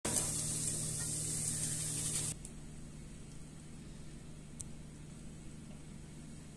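Hot oil sizzling around grated-potato balls frying in a pan, a loud steady hiss that cuts off suddenly about two seconds in. After that only quiet room tone remains, with one faint click.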